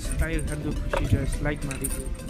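A song with a singing voice plays inside the car's cabin, wavering in pitch, and a brief metallic jingle comes near the end.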